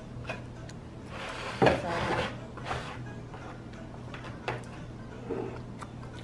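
Plastic ice pop molds being handled and their frozen pops worked loose: scattered clicks and knocks, with a louder scrape about one and a half seconds in.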